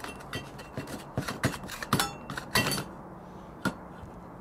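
Klein-Kurve combination pliers' nose being twisted inside the cut end of one-inch steel EMT conduit to ream it: irregular sharp metal-on-metal clicks and scrapes, about six of them.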